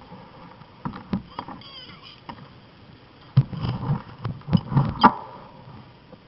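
Mountain bikes rolling down a dirt forest trail past the camera, with rattling and sharp knocks from the bikes over the ground, loudest in a cluster of knocks between about three and a half and five seconds in as riders pass close.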